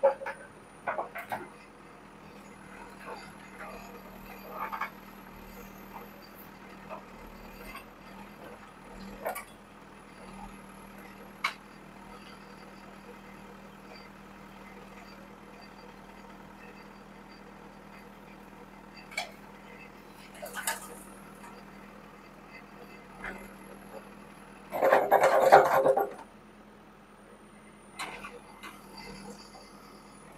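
JCB backhoe loader's diesel engine running with a steady hum while the bucket digs rubble, with scattered knocks of stone and a loud burst of noise about 25 seconds in.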